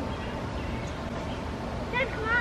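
An eagle's thin, high chirping calls, a few short descending notes near the end, over a steady outdoor background hiss.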